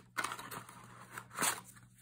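Cardboard box of glue dots being handled and the roll slid out of it: short scraping, crackling sounds, with a louder scrape about one and a half seconds in.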